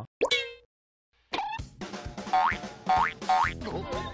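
Cartoon-style comedy sound effects added in editing, over light music: a quick falling whistle-like glide just after the start, about a second of silence, then a sliding tone and three short rising notes in quick succession.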